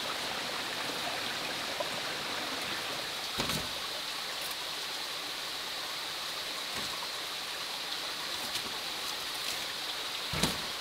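Steady rush of running water, with a steady high hiss laid over it and a single soft knock about three and a half seconds in.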